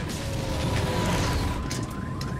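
Cartoon soundtrack: a low rumbling crash effect with whooshes as the damaged racing ship goes down, mixed with music. A thin steady high tone comes in about half a second in.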